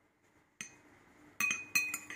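Metal spoon clinking against a glass bowl: one light tap about half a second in, then two quick clusters of clinks with a brief ring near the end.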